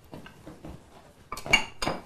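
Kitchen utensils and dishes being handled on a worktop: a few light knocks, then two sharp ringing clinks near the end.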